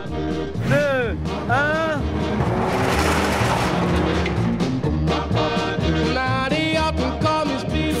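Upbeat background music with a steady beat. About two and a half seconds in, a rush of noise rises over it and fades out again about two seconds later.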